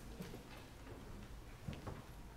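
Quiet room with a few faint, soft clicks and taps, one pair shortly after the start and another near the end.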